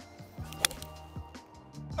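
A forged muscle-back iron strikes a golf ball once, a single sharp click about half a second in, over background music.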